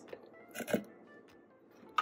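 Raw cashews tipped from a plastic measuring cup into a blender cup of liquid: one brief sound of the nuts dropping in, about half a second in.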